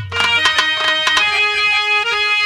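Instrumental interlude of a Bhojpuri birha song. Quick rhythmic hand-drum strokes with plucked or struck notes give way, after about a second, to a steady held chord on an accordion- or organ-like keyboard.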